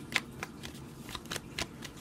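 Tarot cards being handled and drawn from a deck: a scatter of light clicks and flicks of card stock.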